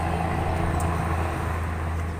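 A motor vehicle engine running nearby, a steady low hum.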